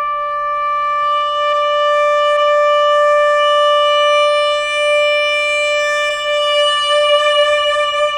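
Traditional Chinese instrumental music: a wind instrument holds one long, steady note, rich in overtones.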